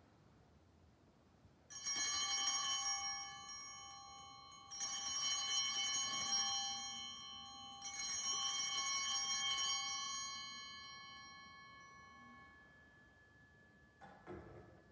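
Altar bells shaken three times, about three seconds apart, each peal ringing out and fading, marking the blessing with the monstrance at Benediction.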